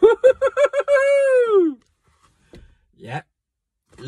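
A man's high falsetto vocalizing with no words: a quick run of short notes on one pitch, then one long note that falls away, followed by two short faint sounds from his voice near the end.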